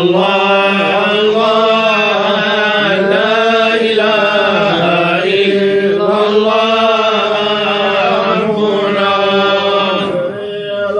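A group of male tolba (Quranic reciters) chanting together in a slow, melodic religious chant. The phrases rise and fall continuously over a steady held low note.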